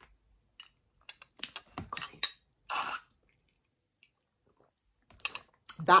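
Scattered light clicks and taps, a few in a row, with a short rustling noise about three seconds in and a brief hush in the middle.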